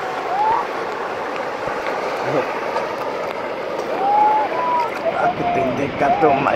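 Steady rush of ocean surf and churning water at the waterline, with people's voices calling out briefly about half a second in, around four seconds in, and again near the end.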